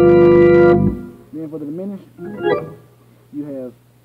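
Church organ holding a chord, the IV chord in D major with G in the bass, which cuts off a little under a second in. A man's voice then talks over a faint steady hum.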